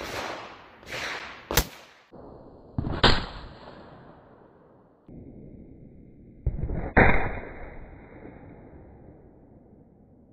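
Two sharp cracks of a Ruger 10/22 semi-automatic .22 LR rifle firing CCI Stinger hollow points, about three and seven seconds in, each trailing off briefly. A few lighter knocks and a sharp click come in the first two seconds.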